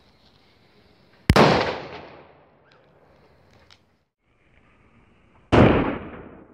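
Two DFG Senior Bang firecrackers (0.5 g of flash powder each) going off, one about a second in and one near the end. Each is a single sharp, very loud bang with a fading echo, preceded by the faint steady hiss of a burning fuse.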